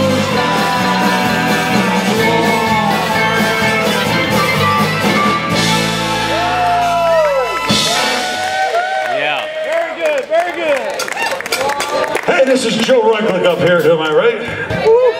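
A live folk band of banjo, acoustic guitar, fiddle, washboard, bass and drums plays the last bars of a song, which ends a little over seven seconds in. Shouts and cheers from the audience follow.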